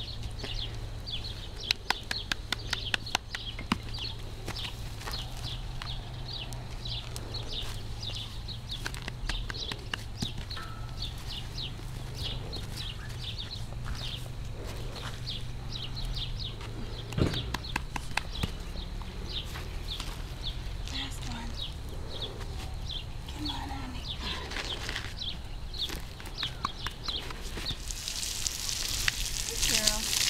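Short high chirps repeat evenly throughout. A few sharp knocks come about two seconds in, while the filly's hooves are being handled. Near the end a garden hose begins spraying water onto the horse's legs with a steady hiss.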